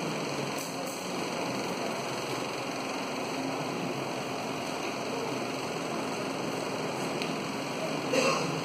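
A felt blackboard duster wiping chalk off a chalkboard, heard over a steady rushing background noise.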